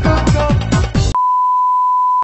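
Electronic dance music with repeated falling pitch sweeps cuts off abruptly about a second in. A single steady high test-tone beep, the tone that goes with TV colour bars, follows.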